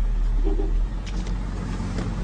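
Car engine running with a steady low hum, heard from inside the cabin, easing slightly in level about a second in.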